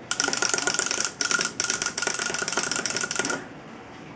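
Small pull-chain toy's clockwork mechanism running down, a fast whirring rattle of clicks with a steady whine under it, cutting off about three seconds in.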